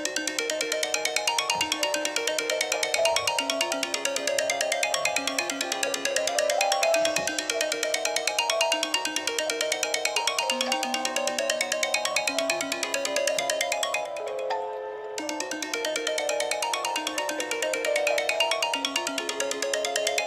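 An iPhone ringing with an incoming call: a musical ringtone with a fast, steady beat under a repeating melody, which thins out briefly about fourteen seconds in.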